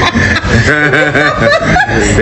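A person laughing in a run of short chuckles, about six a second, mixed with talk.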